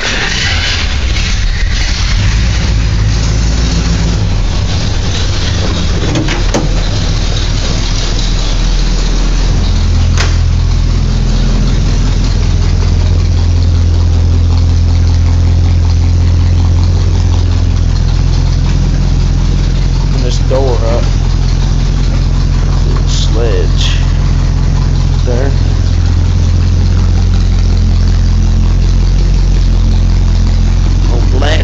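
The 1969 Chevrolet C10 pickup's engine starts and runs at a steady idle, heard from inside the cab. Its note grows fuller about nine or ten seconds in, then holds steady.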